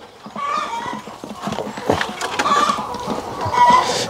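Chickens clucking and calling, with short wavering calls that grow louder toward the end.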